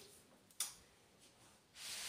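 Near silence: room tone, with one faint click a little over half a second in and a short breath-like hiss near the end.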